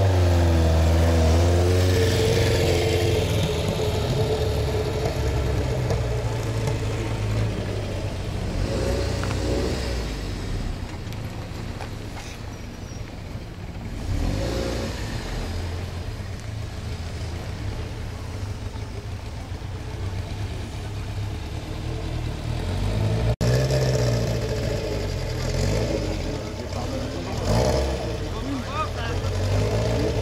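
Alpine Renault A110's rear-mounted four-cylinder engine running as the car drives slowly around a car park. It is loudest at the start as it moves off, quieter in the middle, and close again near the end as it comes back past, with voices of onlookers in the background.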